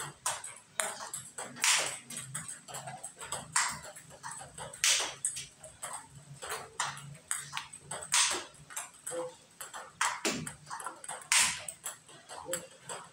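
Table tennis multiball drill: plastic balls being fed with a paddle, bouncing on the table and struck back with forehand topspin and smash strokes, a rapid string of sharp ball clicks. Loud smash hits stand out every one to three seconds among the quieter taps and bounces.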